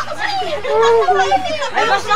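A crowd of children and adults shouting and talking excitedly over one another.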